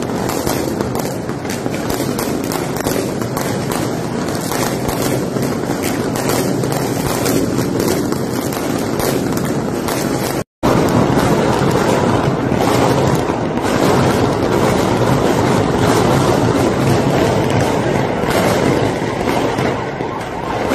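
Fireworks and firecrackers going off in a street: dense, continuous crackling and popping. The sound cuts out for a moment about halfway through, then carries on.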